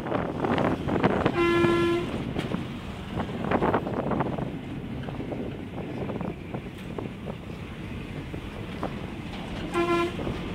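Road noise and wind from a moving vehicle in traffic. A vehicle horn honks once for about half a second, about a second and a half in, and gives another short honk at the very end.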